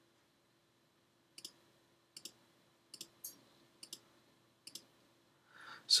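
Quiet computer mouse clicks, about six sharp ones at irregular intervals, over a faint steady hum.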